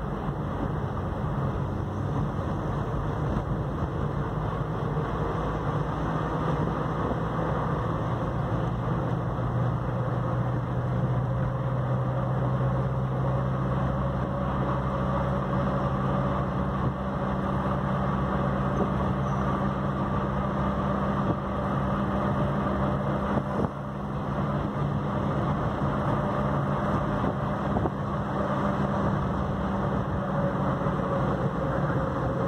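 Car engine and tyre noise heard from inside a car driving at a steady cruise, a continuous low hum whose pitch shifts slightly about a third of the way in.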